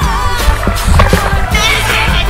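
Background pop song with a steady beat and a strong bass line.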